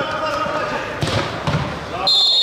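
A football being kicked on an indoor artificial-turf pitch: a few sharp thuds, the strongest about a second in and another half a second later, under players' voices calling out.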